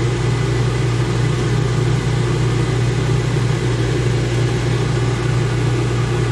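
A large one-kilowatt microwave oven running: a steady, even hum.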